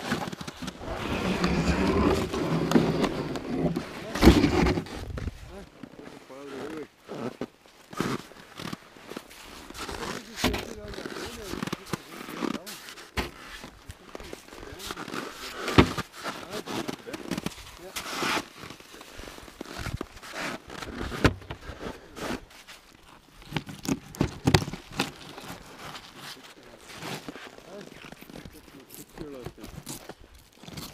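Irregular knocks, scrapes and crunches of fish and gear being handled on snow, with scattered sharp knocks of uneven spacing.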